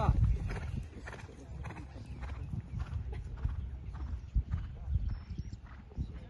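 A horse cantering on sand arena footing, its hoofbeats sounding as a run of soft, dull knocks over a low steady rumble.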